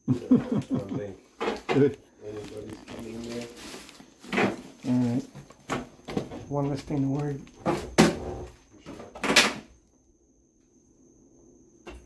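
People talking in a small room, the talk stopping about ten seconds in. A thin, steady high-pitched whine runs underneath.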